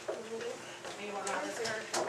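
Indistinct background chatter of several people talking in a small room, with a short click near the end.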